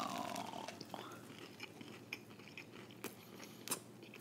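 A person biting into and chewing a plant-based hot Italian sausage, quietly, with scattered soft mouth clicks.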